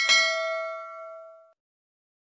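A notification-bell sound effect strikes a single ding as the bell icon is clicked. It rings with several clear tones and fades out over about a second and a half.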